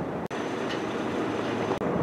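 Steady outdoor background noise, an even hiss with no distinct source, broken by two brief dropouts: one shortly after the start and one just before the end.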